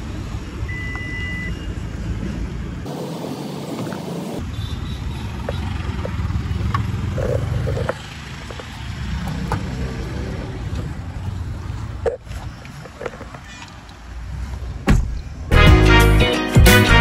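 Toyota Fortuner's power tailgate beeping once, then its motor running as the tailgate closes, over a steady low rumble. A few light clicks and knocks of car doors and handles follow.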